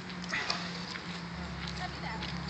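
Playground ambience: distant children's voices and brief calls over a steady low hum, a deeper hum joining about two-thirds of the way through.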